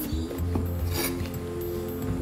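Soft background music holding a steady chord, with a knife slicing through raw beef against a wooden cutting board, one sharp cut about a second in.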